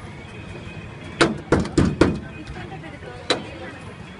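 Sharp knocks of hard objects on a stainless steel counter while ice gola is prepared: four quick ones within about a second, then a single one about a second later, over steady stall background noise.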